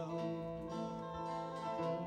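Guitar accompaniment of an Azorean cantoria: plucked strings playing a short instrumental passage between sung verses.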